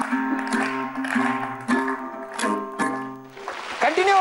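Acoustic guitar strummed, a handful of chords each ringing on, dying away near the end.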